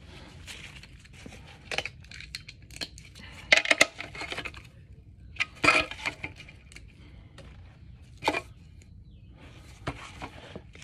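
Steel sockets and tools clinking and rattling as they are picked through in a socket-set case, in a string of separate clinks; the loudest cluster comes about three and a half seconds in, with further clinks near six and eight seconds.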